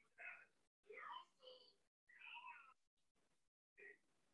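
Very faint speech, close to a whisper, in short phrases that cut in and out.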